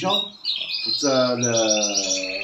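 Caged songbirds singing, a fast run of high chirps and trills starting about half a second in and carrying on. A drawn-out voiced sound with a slightly falling pitch lies under it in the second half.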